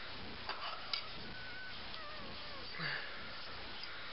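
Plastic Lego pieces being handled and clicked together: two sharp clicks about half a second and a second in, and a softer rattle near the three-second mark, over a steady hiss.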